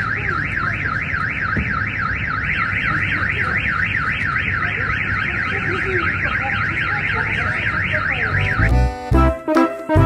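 A car alarm siren warbling rapidly up and down, about four sweeps a second, with faint voices beneath. Near the end it cuts off and keyboard music with a heavy bass begins.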